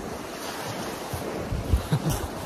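Steady rushing wind noise, with gusts buffeting the microphone in low rumbles near the end.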